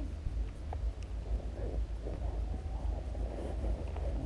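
Wind buffeting the camera's microphone, a steady low rumble, with faint indistinct sounds above it.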